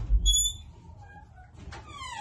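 A door bumping and giving a short high squeak as it is pushed open. Near the end, a young child starts a long whining call of "mommy" that falls in pitch.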